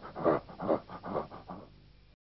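A Rottweiler panting with its mouth open: four quick, even breaths about two to three a second, fading out near the end.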